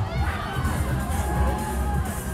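Riders screaming on a swinging pendulum ride, several voices rising and falling, over loud fairground music with a heavy bass.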